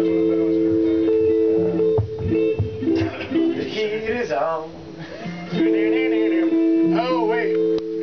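An instrument holds a steady two-note chord. It drops out in the middle and comes back for the last couple of seconds, with people talking over it.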